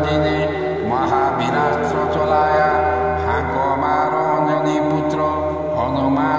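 Devotional mantra music: a chanting voice over a steady low drone, with new phrases starting about one, three and six seconds in.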